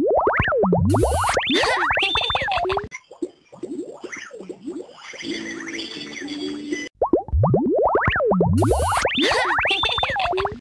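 Children's TV channel ident jingle: music with cartoon sound effects, rapid rising swoops, boings and plops. The same burst of effects plays twice, with a quieter, gentler musical passage between them.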